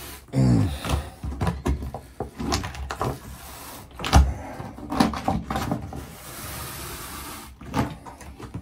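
An old peel-and-stick bath mat being pulled up by hand from a bathtub floor: irregular crackling, ripping and rubbing of the mat against the tub, opening with a short falling squeal and with a louder knock about four seconds in.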